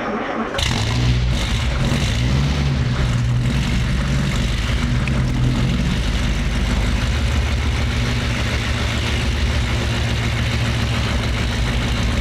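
Duesenberg Model J's twin-overhead-cam straight-eight engine starting, catching about half a second in. Its pitch rises and falls for the first few seconds as it is revved, then it settles into a steady idle.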